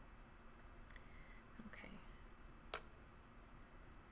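Near silence, broken by one sharp click a little before three seconds in: a plastic butter knife set down on a tabletop.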